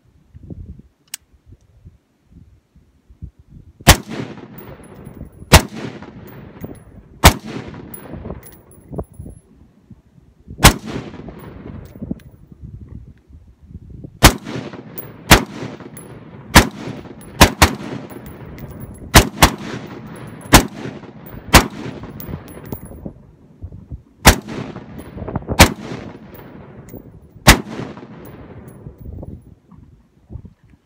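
A 10.5-inch-barrel AR pistol fitted with a linear compensator firing about seventeen single semi-automatic shots, each report ringing out for about a second. The shots come at irregular intervals, a second or more apart with a few quick pairs, and the gun cycles without a malfunction on its first function test.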